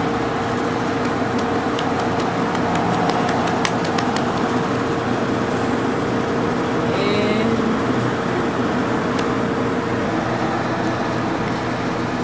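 Road traffic noise: a steady wash of passing cars, with a steady hum that stops about ten seconds in.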